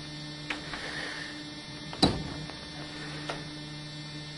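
Steady low electrical hum, with a few short clicks, the sharpest about two seconds in.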